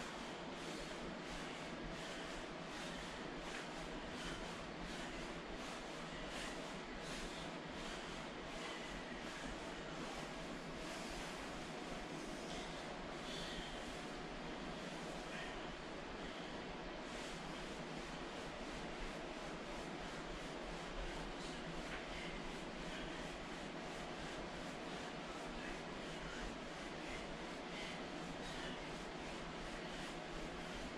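Steady hiss of room noise with faint, regular swishing of a nylon sauna suit, a few times a second, as the wearer exercises through squats and couch dips.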